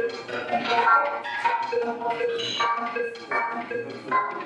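Live electronic music: a synthesizer line moving in short stepped notes.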